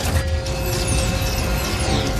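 Loud, dense action soundtrack music, with several high falling whistling tones sweeping down through it.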